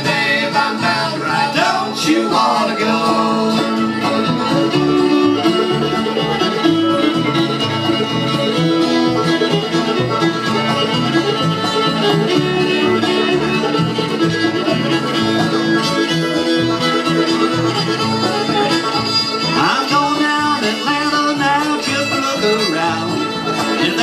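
Live string band playing an instrumental break: fiddle, banjo, acoustic guitar and upright bass together at a steady tempo, with no singing.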